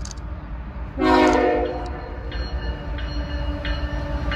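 CSX diesel freight locomotive sounding its air horn: a loud blast starts about a second in and fades, then the horn carries on more softly, over the low rumble of the approaching train.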